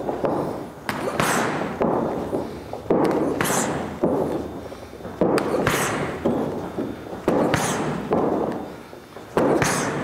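Boxing gloves smacking into focus mitts as a southpaw drills his straight left hand to the pads. The sharp, echoing smacks come repeatedly, often two close together, about every two seconds.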